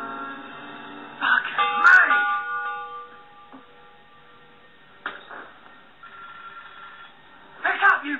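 A bell is struck loudly a little over a second in, and its ringing tone fades away over the next second or so, over film soundtrack music. A short burst of a voice begins near the end.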